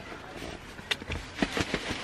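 Soft rustling and handling of a cardboard shipping box, with one sharp click about a second in and a few light taps just after.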